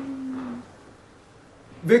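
A man's drawn-out "ohhh" of shock, one long held note gently falling in pitch, trailing off about half a second in; then a short pause before he speaks again near the end.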